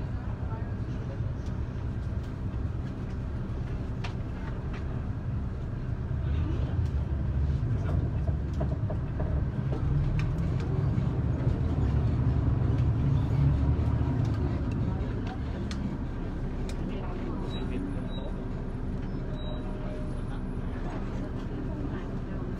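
Tour bus engine and road rumble heard from inside the cabin as the bus drives along, growing louder for several seconds in the middle before settling back to a steady run.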